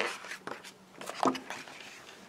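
A picture-book page being turned by hand: soft paper rustling and brushing. About a second in there is a brief vocal sound from the reader.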